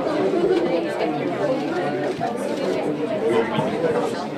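Indistinct chatter of many people talking at once in an open-plan office, voices overlapping with no single speaker standing out.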